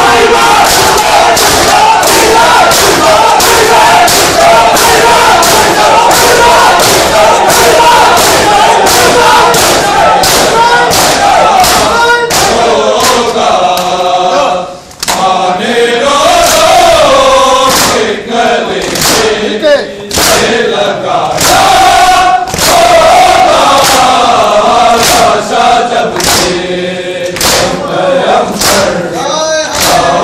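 A large group of men chanting a mourning lament (noha) in unison while beating their bare chests with their hands (matam). The hand slaps make a steady beat under the voices, with a brief lull about halfway through.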